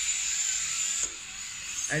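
Brushless motors of an armed FPV quadcopter spinning with no propellers fitted, a steady high whine: with Airmode on, the motors keep turning at idle even with the throttle at its lowest. The whine drops in level about a second in.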